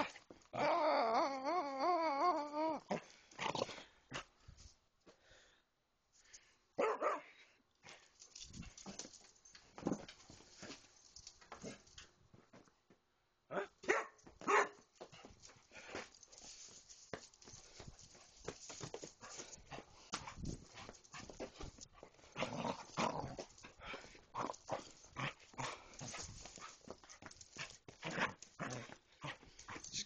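Young basset hound play-growling and barking at close range: a drawn-out wavering growl near the start, then scattered short growls, barks and scuffles.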